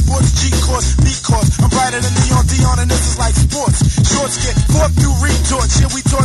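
Early-1990s hip hop track: a rapper delivering verses over a beat with a deep, heavy bass line.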